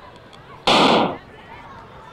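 Starting gun firing once to start a sprint race: a single loud bang about two-thirds of a second in, lasting about half a second with a brief fade.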